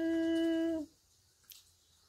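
A woman's steady, closed-mouth hesitation hum ("mmm") held on one pitch for about a second as she loses her train of thought, followed by a faint click.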